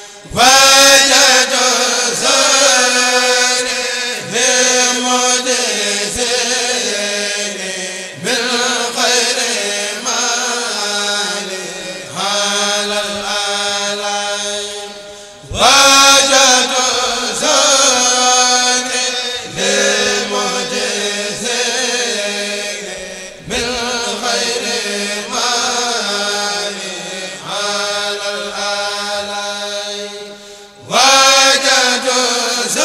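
A Mouride kourel, a men's group, chanting Arabic religious verse in unison into microphones. The phrases are long and held, and fresh loud entries come about a second in and again about halfway through.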